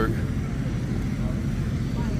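Steady low rumble with a faint hum: outdoor background noise, with no single sound standing out.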